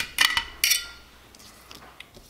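Three light metallic clinks in the first second, the last ringing briefly: the thin aluminum Raspberry Pi case and its small screws being handled and set down on a table.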